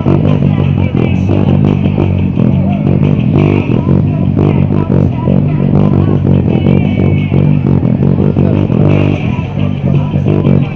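Handmade five-string electric bass played through a small 30-watt amp, a steady rhythmic bass line with rock music.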